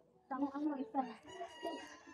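A rooster crowing: one long call starting about a second in, with a person talking over it.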